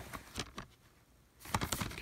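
A plastic DVD case being handled: a few light clicks, a short pause, then a flurry of clicks and rustling near the end.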